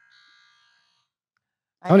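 Electronic quiz buzzer sounding once, a faint steady tone of several pitches lasting about a second, as a player buzzes in to answer.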